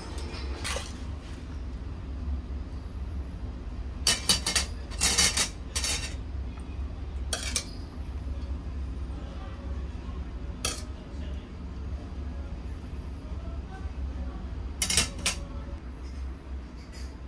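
Metal ladle and tongs clinking against an aluminium hot-pot pan and a ceramic bowl as broth and food are served: scattered short clinks, bunched about four to six seconds in and again near the end, over a steady low hum.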